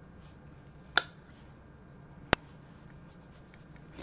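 Two sharp clicks about a second and a half apart, over faint room noise.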